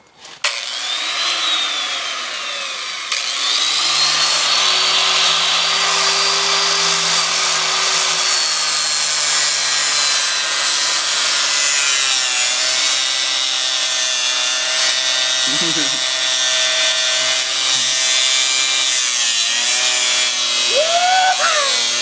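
Electric grinder with a cutoff wheel cutting through a motorcycle drive chain: a loud, steady grinding hiss over a high motor whine that starts about half a second in. The whine dips in pitch a couple of times as the wheel bites into the chain.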